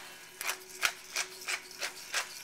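Hand-twisted pepper mill grinding fresh pepper over a pan: a run of short, crisp rasping clicks, about three a second.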